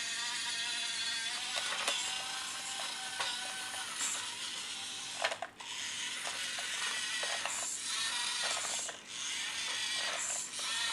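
Small electric drive motor and plastic gearbox of a Siku Control 1:32-scale Deutz-Fahr Agrotron X720 RC tractor whirring with a ratcheting gear chatter as it drives over floor tiles. The whine drops out briefly twice, about five and a half and nine seconds in, as the tractor stops and changes direction.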